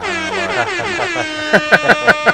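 A horn-like sound effect: a tone slides down in pitch for about a second, then holds steady while a rapid string of short blasts sounds over it near the end.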